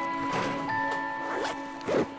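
A fabric backpack zipper pulled open in several short strokes, the loudest near the end, over soft background music.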